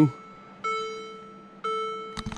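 Mercedes-Benz CLA 200 interior warning chime sounding twice, about a second apart: each chime is a single bell-like tone that starts sharply and fades.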